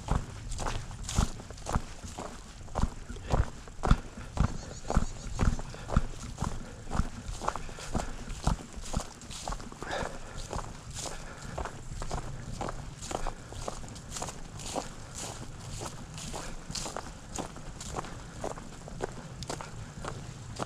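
Footsteps of a hiker walking on a dirt trail covered with dry fallen leaves, about two steps a second, each step a crunching thud. A low rumble of wind on the microphone runs underneath.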